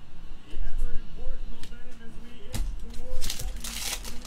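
A foil trading-card pack torn open with a crinkling rip in the last second, after a few knocks and clicks from cards being handled. Voices talk faintly underneath.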